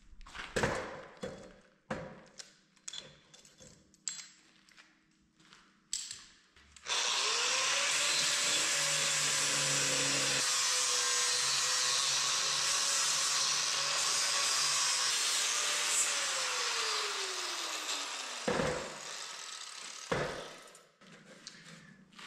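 Corded angle grinder starting about seven seconds in and grinding a torch-cut steel edge for about ten seconds, cleaning off torch slag, with a steady motor whine under the grinding hiss. It then winds down with a falling whine. A few knocks of metal and tools being handled come before and after.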